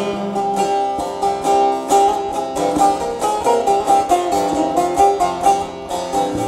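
Long-necked bağlama (saz) played solo on a Turkish folk tune (türkü), a quick stream of plucked and strummed notes with no singing.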